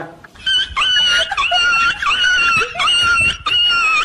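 A high-pitched crying wail, a run of about six held notes, each a little over half a second long with short breaks between, starting about half a second in.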